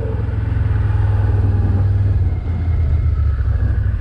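Can-Am Outlander Max 1000's V-twin engine running at low speed on a dirt track, its note dropping a little past halfway as the throttle eases off.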